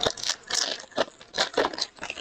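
Foil wrapper of a 2023 Bowman Chrome Sapphire baseball card pack being torn open by hand, crinkling and crackling in irregular bursts.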